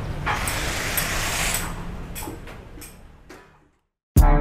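Workshop-yard background noise: a steady low rumble with a few clicks and a brief rush of hiss about half a second in, all fading out to silence near the end.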